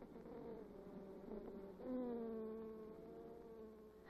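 Honey bees buzzing: a faint hum of wingbeats, with a louder buzz coming in about two seconds in and slowly dropping in pitch.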